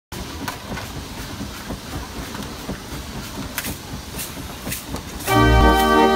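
Dutch street organ (draaiorgel) starting up: irregular clicks and knocks as the folded cardboard music book is fitted into the key frame. Near the end the pipes and bass come in loudly, playing a tune.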